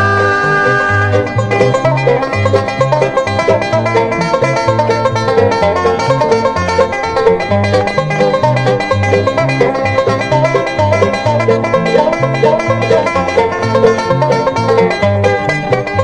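Instrumental break between sung verses of a string-band song: quick plucked-string picking over a bass line of steady, evenly spaced low notes.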